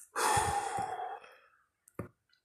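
A man's long sigh, a breathy exhale of about a second that fades out, then a brief click near the end.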